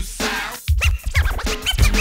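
Instrumental break in a hip hop track: DJ turntable scratching over the drum beat, with a quick run of short rising and falling scratches in the second half.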